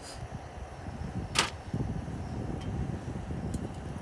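Low, uneven rumble of wind on the microphone, with one sharp click of metal cookware being handled about a second and a half in and a couple of faint ticks after it.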